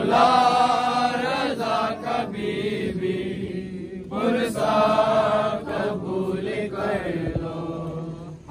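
Men's voices chanting an Urdu noha, a Shia lament, in long held phrases with brief breaks between lines.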